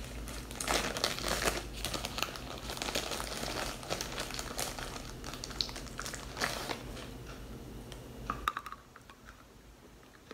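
Crinkling and crackling from a sample packet being handled, with the crunch of a bite of hazel cream edible clay being chewed close to the microphone; the crackling is dense for most of the stretch and dies down near the end.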